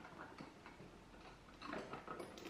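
Faint handling noises: light clicks and rustles as a hand rummages in the see-through pouch in a camera bag's lid, with a louder rustle near the end.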